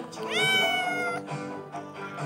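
A kitten meowing once, a rising call that then holds for nearly a second, begging for food, over quiet background music.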